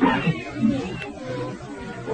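Voices from the congregation calling out in response to the preacher, among them a high-pitched, drawn-out call in the first second.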